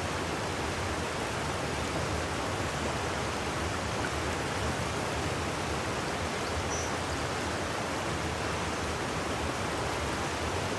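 A fast-flowing creek rushing steadily.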